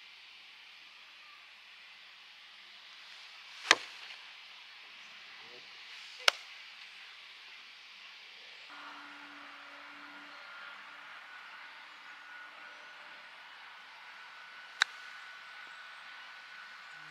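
Sharp crack of a golf club striking the ball off a tee mat about four seconds in, the loudest sound. Two more sharp clicks follow, one a couple of seconds later and one near the end, over a faint outdoor hush; a faint thin steady tone comes in around the middle.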